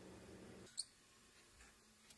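One short, high squeak of metal on metal as a tool is set on the steel axle of a pressed-steel toy truck's wheel, about a second in. Just before it, a faint low hum stops abruptly.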